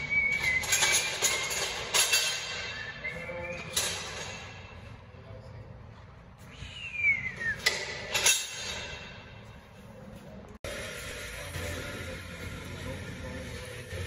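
High-pitched squeals and sharp metallic knocks from the steel rollers of heavy-load machinery skates as a transformer is pushed across a concrete floor, including one squeal that falls in pitch. After an abrupt cut, a steadier background noise follows.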